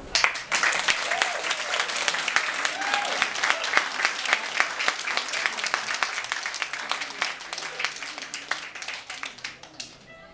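Small audience applauding, starting suddenly and thinning out near the end, with a couple of short calls and voices among the clapping.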